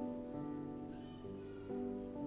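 Slow piano music: sustained chords, with a new chord or note struck every half second or so.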